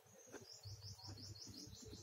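A bird chirping faintly in a quick run of about eight short high notes, each dropping slightly in pitch.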